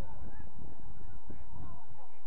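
Wind buffeting the microphone as a steady low rumble, with a few faint short chirps above it.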